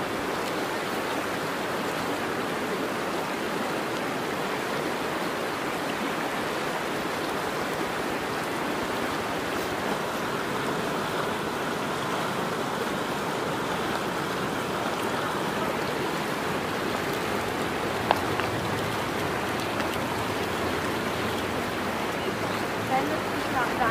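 A river rushing over rocks in a steady, unbroken wash of water noise. A single sharp click comes about three-quarters of the way through.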